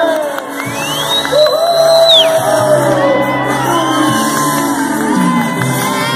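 Audience cheering and shouting, with high screams and whoops, over music with a steady low bass line.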